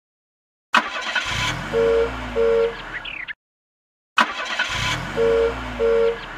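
Cartoon car sound effect: a click, then an engine revving up and down with two short horn beeps. It plays twice, about a second apart.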